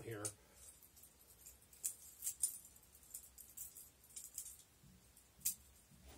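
Irregular sharp metallic clicks and clacks of a butterfly trainer knife's handles and blade swinging and knocking together as it is flipped, about eight over the few seconds, the loudest near the end.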